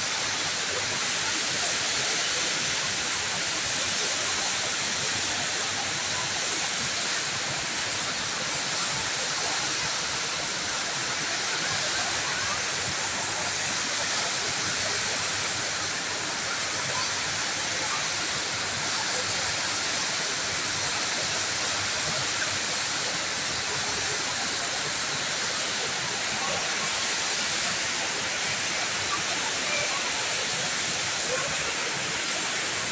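Steady rush of a large indoor waterfall, even and unbroken, with people's voices faintly beneath it.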